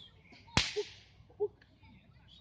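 A Roman candle firing one star: a sharp pop about half a second in, followed by a short hiss that fades quickly. The stars carry no bursting charge, so no bang follows.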